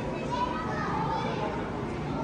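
Indistinct background chatter and voices of children playing in an indoor play centre, many voices overlapping at a steady level with no one voice standing out.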